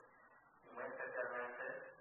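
Only speech: a man lecturing, a short pause and then a spoken phrase.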